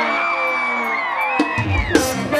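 A song playing: a male voice holds one long sung note over the backing music, and the note falls away near the end. A deep bass thump enters about three quarters of the way through.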